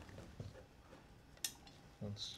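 Quiet room tone with a single short click about one and a half seconds in, a small handling sound at the bench.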